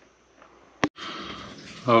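Near silence, then a single sharp click a little under a second in, followed by faint steady background noise.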